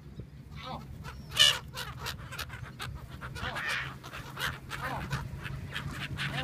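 A flock of gulls calling, many short harsh cries overlapping, with the loudest about one and a half seconds in, over a low steady hum.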